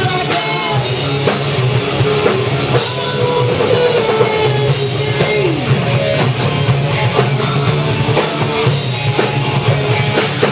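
Rock band playing live in a rehearsal room: electric guitars, bass and a drum kit. A held note slides down in pitch about halfway through.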